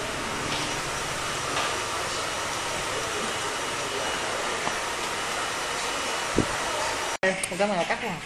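Hair dryer running steadily with a loud rushing whoosh, stopping abruptly a little after seven seconds in.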